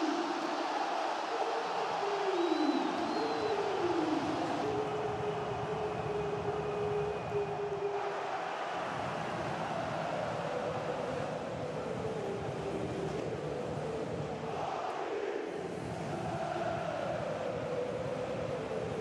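Stadium crowd cheering and singing together in celebration of a goal, a long chant whose pitch slides down and then holds steady.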